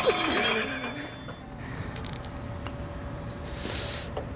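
A brief wavering vocal exclamation in the first second, then low outdoor background with a couple of faint clicks and a short hiss near the end.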